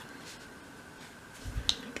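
A quiet room with one sharp little click near the end, as a thin wooden cocktail stick is set down on a plastic cutting mat, just after a soft low knock.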